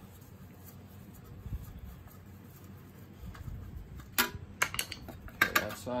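Metal hand tools and small steel engine parts clinking: a quiet stretch, then a quick cluster of sharp metallic clinks about four seconds in.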